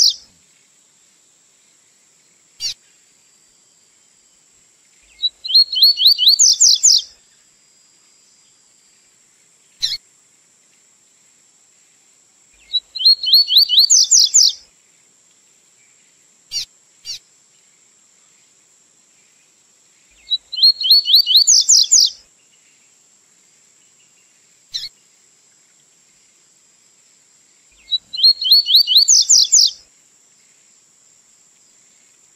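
Double-collared seedeater (coleirinho) singing the 'tui-tui' song type: a quick phrase of rapid rising notes, repeated four times about every seven seconds, with single short call notes between phrases. A faint steady high hiss runs underneath.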